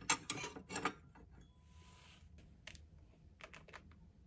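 Porcelain cups and saucers clinking as they are handled on a glass shelf: a few sharp clinks in the first second, then lighter taps near the end.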